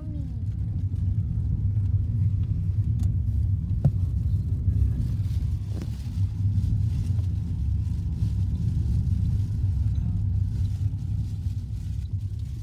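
Steady low rumble of a car driving, heard from inside the cabin, with a couple of brief knocks about four and six seconds in.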